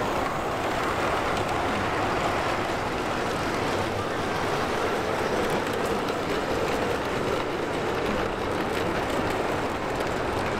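LGB G-scale model trains running on the track: a steady rumble of wheels and motors with faint clicks.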